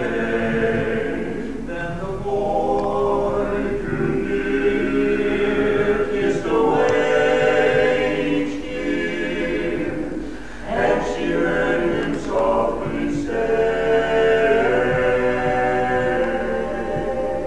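Barbershop quartet of four men singing a cappella in close four-part harmony (tenor, lead, baritone, bass), holding chords that swell and change, with a short break between phrases about ten seconds in.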